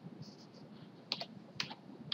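A few faint keystrokes on a computer keyboard, as single separate key taps; the two clearest come about a second and a second and a half in.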